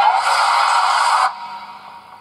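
Film-trailer sound effect: a loud, dense noisy burst that stops abruptly after a little over a second and then fades away.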